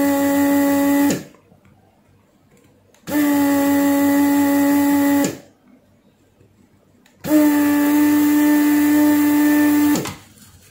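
Electric desoldering gun's vacuum pump running in three bursts of about two seconds each: a steady motor hum with hiss, switched on and off as it sucks molten solder from the connector's pin joints. The first burst stops about a second in, the second runs from about three to five seconds, and the third starts about seven seconds in.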